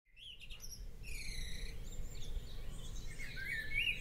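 Birds chirping and singing, several short rising and falling calls overlapping over a faint low background rumble, fading in from silence at the start.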